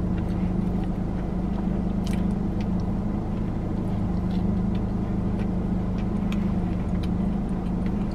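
A steady low hum inside a car, the loudest sound throughout, with faint chewing and a few soft clicks of someone biting into and eating a hot dog in a bun.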